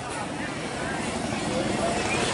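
Street traffic: a steady rush of vehicle noise with no clear engine note, growing gradually louder through the pause.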